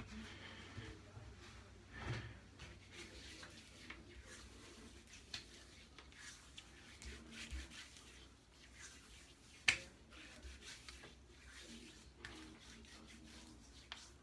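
Hands rubbing balm into a freshly shaved scalp and face: faint, irregular skin-on-skin rubbing, with a single sharp click about ten seconds in.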